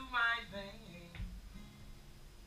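A man singing the end of a line over a steel-string acoustic guitar. The voice stops within the first half-second, and the guitar carries on quietly with a couple of soft strums.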